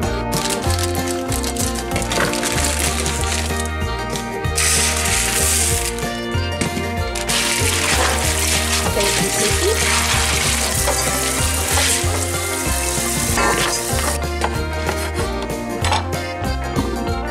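Background music with a steady beat, and a kitchen faucet running onto white beans in a colander for several seconds in the middle, with a short break once.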